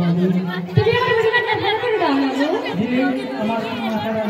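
A performer's voice amplified over a PA, delivering lines in drawn-out, sing-song phrases with long held notes, over audience chatter.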